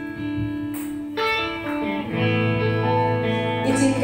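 Worship band playing an instrumental passage: held keyboard chords with electric guitar, changing chord about a second in, with a low note joining about two seconds in.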